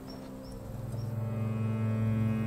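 Soundtrack music: a low, sustained drone of held notes that swells about halfway through, with a few faint short high chirps in the first second.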